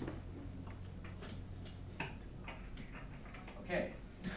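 Light, irregular taps and clicks, as of a pen or stylus working an interactive whiteboard, over a steady low hum, with a brief louder sound just before the end.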